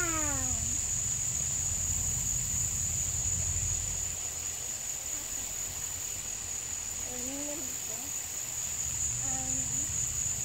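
Steady, high-pitched insect chorus, a constant outdoor drone. A low rumble runs under it for the first few seconds and fades, and faint voices come and go near the end.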